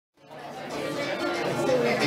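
People talking in a hall, fading in from silence in the first fraction of a second.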